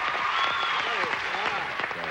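Applause from the studio audience and contestants, a dense steady clapping with voices over it, greeting the end of a timed round.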